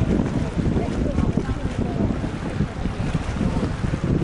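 Wind buffeting the camera's microphone, a loud, uneven low rumble, with faint voices in the background.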